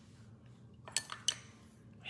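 A few light clinks of a metal drinking straw against a glass of water about a second in.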